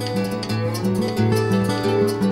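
Plucked guitar playing the accompaniment of a folk song, a run of picked notes over a changing bass line.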